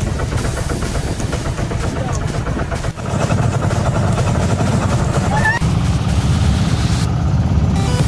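Outrigger boat's engine running steadily under way, a dense low rumble, with voices and music over it.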